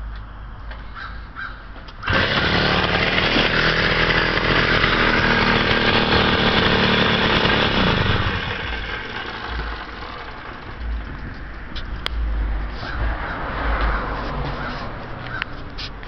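Puch Pinto moped's small two-stroke engine comes in suddenly and loud about two seconds in and runs steadily. About eight seconds in its pitch falls and it quietens sharply, as if the throttle is closed or the engine is shut off.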